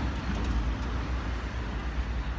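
Steady street traffic noise: a low, even rumble of passing road vehicles.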